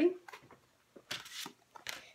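Virulence playing cards being handled and slid on a tabletop: a few soft rustles and light taps, with a longer card slide about a second in.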